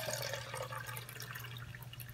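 A thin stream of water running from an AquaTru reverse-osmosis purifier's dispenser tap into a plastic cup as it fills. It thins out in the second half.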